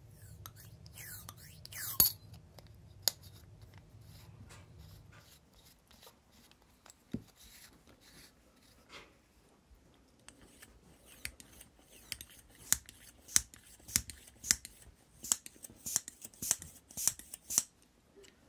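Small metal clicks and scrapes from the brass pump rod and barrel of a vintage blowtorch's pressure pump being fitted and worked by hand, with a brief squeak or two early on. Over the last six seconds comes a quick run of sharp clicks, about two to three a second.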